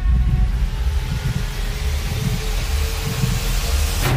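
Trailer sound design: a rushing, hissing riser swells steadily brighter over a pulsing low bass, with a faint tone creeping upward, and cuts off suddenly at the end.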